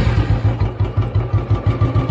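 Royal Enfield 350 single-cylinder engine idling just after being started, with a quick, even thumping beat.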